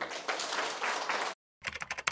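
An audience applauding briefly, cut off abruptly about a second in. After a short silence comes a quick run of computer keyboard typing clicks, used as a sound effect.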